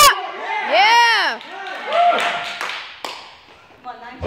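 A high-pitched voice shouting encouragement in several drawn-out, rising-and-falling yells, continuing the "come on" cheers, with a sharp smack right at the start.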